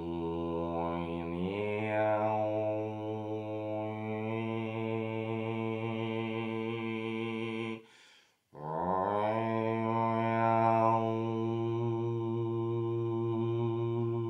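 A man's deep voice intoning a wordless chant: two long held notes with a breath between them about eight seconds in. The first note steps up in pitch after a second and a half, the second slides up at its start, and the vowel shifts within each. He offers it as a vibrational incantation meant to carry emotion.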